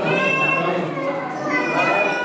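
A baby crying in high-pitched wails, one at the start and another about a second and a half in, over the chatter of a crowd.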